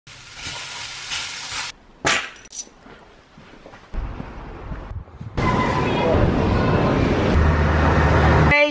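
Short clips in quick succession: minced chicken sizzling as it is stirred in a frying pan with a wooden spoon, then a couple of sharp clicks, then a steady loud rushing as a petrol pump nozzle fills a car with unleaded fuel, with a low hum joining near the end.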